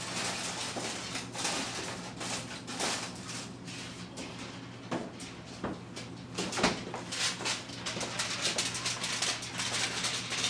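Irregular clattering and rustling from handling things in a kitchen, with one sharper knock about two-thirds of the way through, over a steady low hum.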